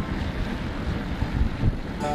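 Wind buffeting the microphone of a moving camera: an uneven, low rumbling rush with no music or voices.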